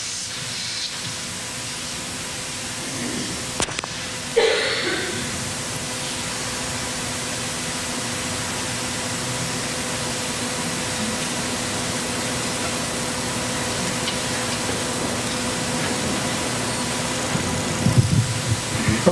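Steady hiss with a faint electrical hum from the microphone and sound system, broken by a sharp click about three and a half seconds in and a short, louder sound just after it.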